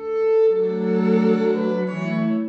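String trio of violin, viola and cello playing a sustained classical passage. A held high note swells in at the start, and a lower bowed line comes in beneath it about half a second in.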